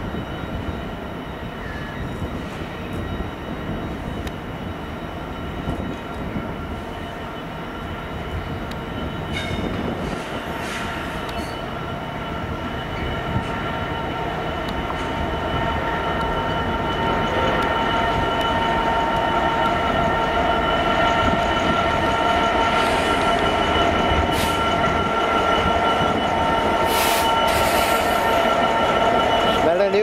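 A DB Cargo Class 66 diesel-electric locomotive, with its two-stroke V12 engine, approaches at low speed and passes close by. It grows steadily louder, and a steady high whine sits over the engine rumble.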